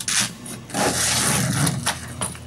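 Hook-and-loop (Velcro) strip between a boat enclosure curtain and its canvas valance rasping as it is worked apart by hand: a short rasp, then a longer one lasting about a second.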